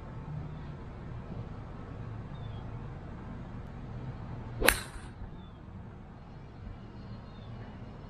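Golf iron striking an RZN HS Tour golf ball on a full swing: one sharp, weird little click of the strike a little past the middle, with a brief ring after it.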